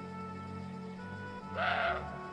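A roe deer gives one short, loud bark about a second and a half in, over background music with long sustained notes.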